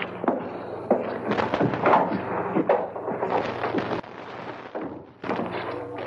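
A run of knocks, thuds and small clatters: radio-drama sound effects of a box being fetched and handled, over a faint steady low hum. The handling sounds thin out about four seconds in.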